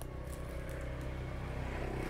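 Faint, steady low motor hum in the background.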